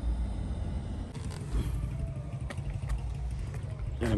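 Steady low rumble of a vehicle's engine and road noise as it drives slowly, heard from on board, with a few faint ticks.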